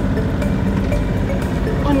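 Steady low rumble of a yacht under way, heard on board.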